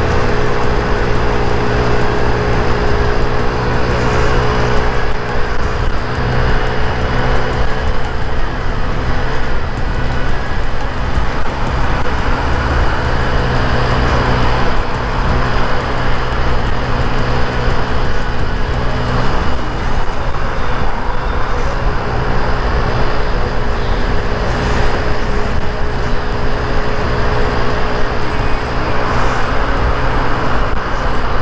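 Mondial Wing 50cc scooter's small single-cylinder engine running at a steady cruise under way, its even engine note mixed with road and rushing-air noise and surrounding traffic.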